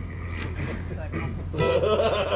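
Indistinct voices talking, faint at first and louder near the end, over a steady low hum.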